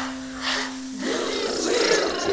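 Background music with a held low note and rhythmic swishing strokes. About halfway through, the note ends and many children's voices come in together, overlapping.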